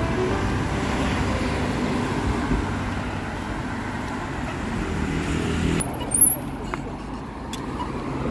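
Road traffic on a city street: cars passing with a steady traffic noise. The noise drops off abruptly about six seconds in, leaving a quieter street with a few faint clicks.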